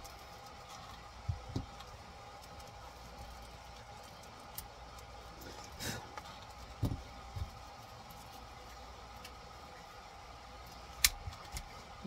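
A small hex driver and hand tools clicking and tapping on an RC car's chassis and ESC: a handful of sparse, light knocks over a faint steady hum.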